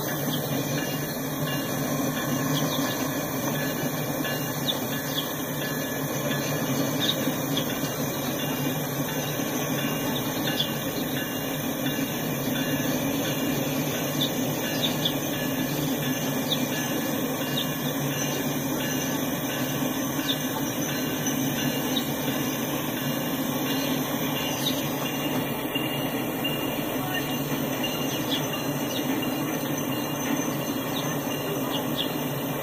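Freight train with diesel locomotives rolling past, a steady rumble of wheels on rail and engines, with faint, scattered wheel squeals.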